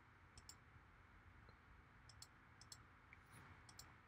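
Faint computer mouse clicks, a scattered handful, over near silence.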